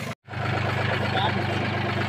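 Tractor diesel engine running steadily with an even low hum, cutting out for a moment just after the start.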